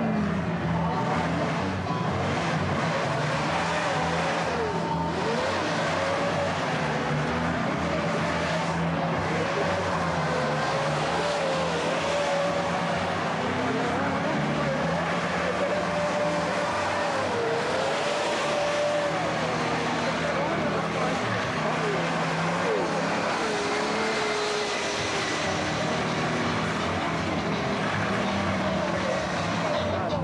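Car doing a burnout: engine running hard at high revs while the spinning rear tyres squeal in a continuous, wavering tone.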